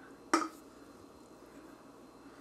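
A single short knock about a third of a second in, as an aluminium beer can is set down on a stone countertop; otherwise faint room tone.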